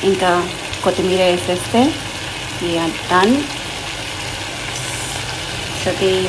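Prawn curry in a masala gravy simmering and sizzling in a pot, a steady hiss. A woman's voice makes several short utterances in the first half.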